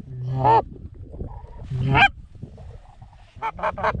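Short reed goose call blown in Canada goose honks: two loud honks that break upward in pitch from a low note, then a quick run of about four clucks near the end.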